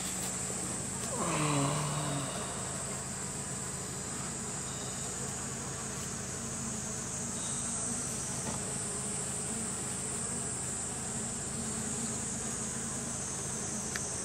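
Honeybees buzzing steadily around an open hive, a low even hum, with a steady high-pitched insect chorus above it.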